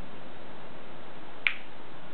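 A single sharp click about one and a half seconds in, over a steady background hiss.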